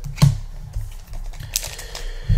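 Pokémon trading cards being handled on a table: a sharp tap about a quarter-second in and a lighter one around a second and a half.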